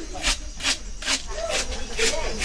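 Knife blade slicing crisply through a banana-stem core, one cut about every half second, as rounds are chopped off. Voices talk faintly in the background.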